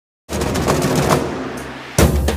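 Rapid drumming on a drum kit, a dense run of fast hits that starts suddenly and fades toward the end.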